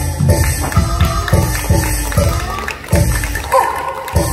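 Taiwanese opera fight-scene music: a run of percussion strikes, several a second, each leaving ringing tones that fall in pitch, with a brief lull a little before three seconds in.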